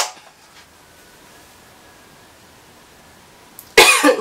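A sharp click at the very start, then a few seconds of quiet room tone, then a woman coughs once, loudly, near the end; she is sick with an airway infection.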